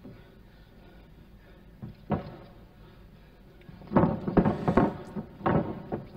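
Faint, muffled ring sound from the old fight footage: a low background with a few dull knocks, one about two seconds in and several between four and five and a half seconds.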